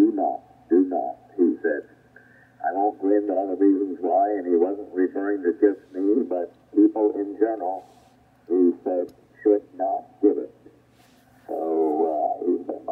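Single-sideband voice from an amateur station on the 40 metre band, heard through a Yaesu FTdx5000MP transceiver's speaker with its DSP width narrowed and IF shift set against interference from a station about 2 kHz away. The speech sounds thin and band-limited, in phrases with short pauses, over a steady low hum.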